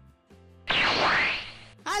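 A whoosh sound effect: one burst of rushing noise, about a second long, starting suddenly and fading away, over steady background music.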